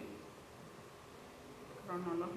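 Quiet room tone with a faint steady hiss in a pause between speech. A voice begins faintly near the end.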